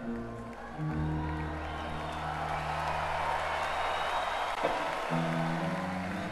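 Live rock band with electric guitar playing held chords over a sustained low bass note. The chord changes about five seconds in, and a swell of noisy wash rises in the middle.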